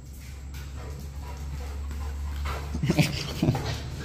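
Rottweiler puppy making a few short whines close together about three seconds in, over a steady low hum.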